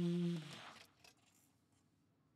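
Saxophone holding a final long note that stops about half a second in, its sound dying away in the room. A few faint clicks follow in near silence.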